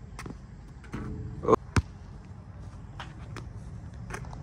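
Basketball thudding on an outdoor court: several separate bounces and hits, the loudest about a second and a half in.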